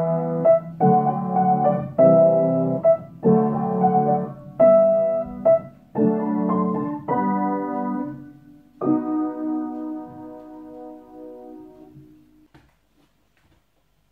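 Piano music: a run of chords, each struck about a second apart, then a last chord held and dying away a little before the end.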